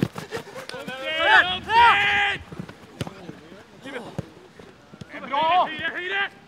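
Football players shouting to each other during a small-sided training game, two loud calls, the first about a second in and the second near the end, with sharp thuds of boots striking the ball in between.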